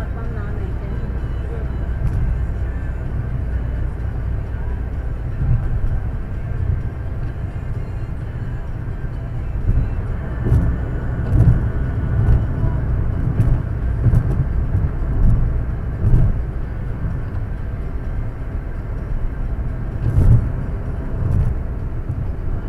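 Car interior road noise as heard from a dashcam: a steady low rumble of engine and tyres at highway speed, with a few short louder low surges between about ten and sixteen seconds in and again near the end.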